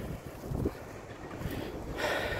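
Wind buffeting a phone's microphone outdoors: an uneven low rumble.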